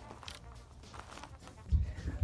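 Faint rustling and small clicks, then, near the end, a run of dull low thumps from the camera being handled and moved about.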